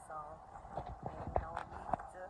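Several irregular knocks and low thumps, the loudest about one and a half seconds in, after a brief bit of a woman's voice near the start.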